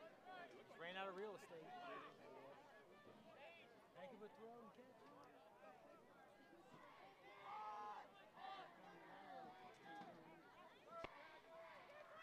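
Faint murmur of many overlapping voices: spectators chatting in the stands, a little louder about two-thirds of the way through.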